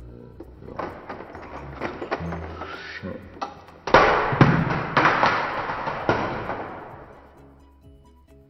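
Metal wire racks and plastic eyeshadow palettes being handled close to the microphone, a rattling, knocking clatter that peaks about halfway through and then dies away. Background music plays underneath.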